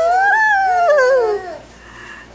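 A high-pitched human voice holding one long drawn-out vowel, rising then falling in pitch, which ends about a second and a half in; the last note of a playful sing-song call.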